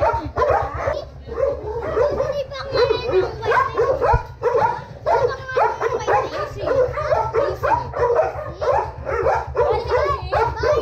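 A young child's high voice chattering and squealing almost without pause, over a steady low rumble.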